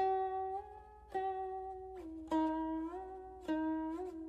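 Slow instrumental music on a plucked string instrument: a single note plucked about every second, several of them bending up or down in pitch as they ring.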